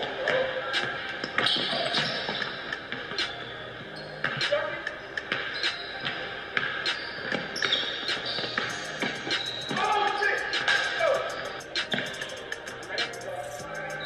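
A basketball dribbled on a hardwood gym floor, repeated bounces at an irregular pace, over background music and faint voices.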